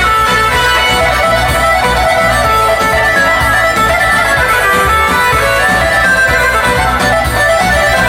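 Live band playing an instrumental passage: a keyboard lead over a steady bass beat, with no singing.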